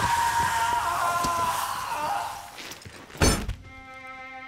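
A man's long, high-pitched scream as molten gold is poured over his head. It fades about two seconds in, and about a second later a loud thud follows as his body falls to the ground. Soft string music comes in near the end.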